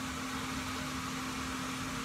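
Steady background hum and hiss, with one constant low tone running through it.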